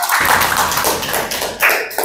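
A small group of people clapping, with many quick, uneven hand claps.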